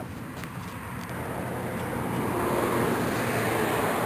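Steady rushing noise of a distant passing vehicle, growing gradually louder and then cutting off sharply at the end.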